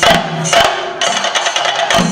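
Live theyyam percussion: chenda drums beaten fast with sticks in dense, driving strokes, with ringing cymbals keeping time.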